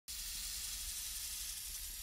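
Steady snake-hiss sound effect, an even airy hiss.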